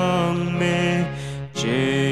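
Slow hymn singing with long held notes. One note fades about one and a half seconds in and a new phrase starts straight after.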